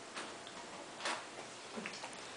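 Toddler chewing watermelon: three faint, short mouth clicks spread across two seconds.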